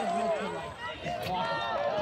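Only speech: voices talking, with a short lull a little under a second in.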